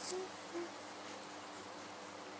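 A woman's two short low closed-mouth hums, like a soft "mm-hmm", in the first second, then quiet room tone.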